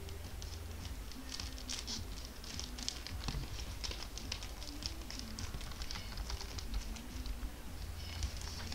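Trading cards in plastic sleeves and top loaders being handled with gloved hands: a run of light plastic clicks and rustles over a steady low hum.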